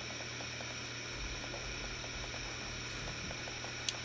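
Steady low hiss with a faint hum of room tone; no distinct sound event.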